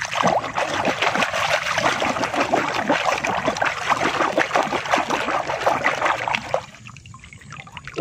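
Foamy water in a bucket sloshing and splashing as a hand scrubs a plastic toy figure under the surface. The splashing stops about six and a half seconds in.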